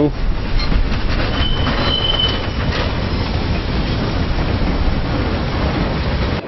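A stainless-steel São Paulo Metro train rolls past on yard tracks with a steady rumble of wheels on rail. A brief high wheel squeal sounds about a second and a half in.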